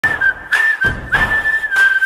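Intro jingle: a whistled tune of long, held notes over a beat, with a hit about every half second.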